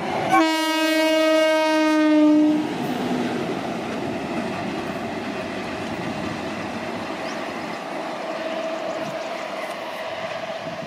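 Indian Railways WAP-7 electric locomotive sounding its air horn in one long blast of about two seconds, its pitch sagging slightly as it ends. The steady rumble of the locomotive running on the rails follows.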